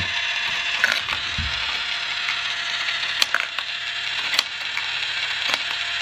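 Mini marble machine running: a steady rattling whir of small metal marbles circling the plastic dishes and riding the lift wheel, with a few sharp clicks as marbles drop and strike.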